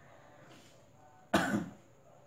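A man's single short cough, sudden and loud after a quiet moment, about one and a half seconds in.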